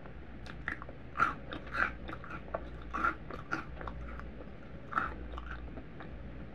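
Close-miked chewing of crunchy Cap'n Crunch cereal: a run of crisp crunches every half second or so, the loudest about a second in, near three seconds and about five seconds in.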